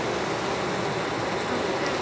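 Steady massed buzzing of a crowd of honey bees flying close around their nest entrance, held up and waiting to get in.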